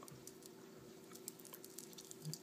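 Near silence: room tone with a faint steady hum and a few faint small clicks.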